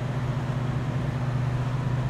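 Interior noise of a 1971 Chevelle SS cruising: the big-block V8 running at a steady speed, a low even hum under steady road noise.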